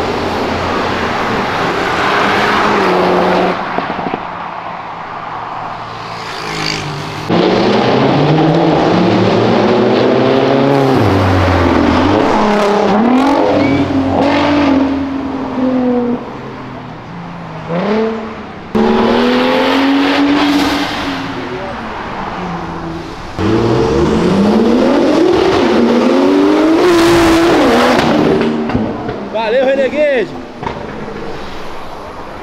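Sports car engines revving hard as they pass by, one after another, the revs climbing and dropping back several times. The loudness jumps suddenly between passes where short clips are cut together.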